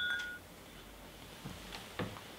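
Ringing of two glass whisky nosing glasses just clinked together, two clear tones fading out within about half a second, then quiet room tone with a faint tick or two.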